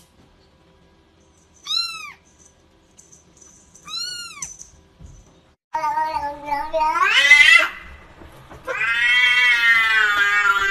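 A kitten giving two short, high mews, each rising and falling in pitch. Then an adult domestic cat gives two long, loud, drawn-out meows, the first rising in pitch, the second held level.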